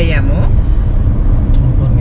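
Steady low road and engine rumble inside the cabin of a car moving at highway speed.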